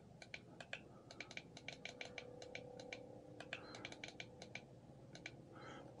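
Faint push-button clicks from a DKD e-bike display, pressed many times in quick, uneven runs while a password is keyed in to change the speed readout's units.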